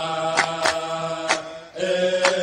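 Voices chanting in unison on long held notes, phrase after phrase, with a short break about three-quarters of the way through. Sharp claps or hits land irregularly over the chant.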